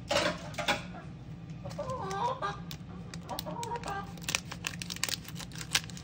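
A chicken calls twice, about two seconds in and again a second and a half later. Over the last two seconds a plastic packet crinkles and clicks as it is handled.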